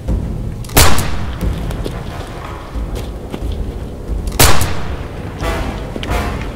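Two loud, sharp bangs, the first just under a second in and the second about three and a half seconds later, each trailing off in a short echo, with music underneath.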